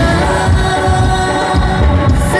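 Live band music: a man singing into a microphone over keyboard, electric guitar, bass and drums, with sustained notes over a pulsing bass line.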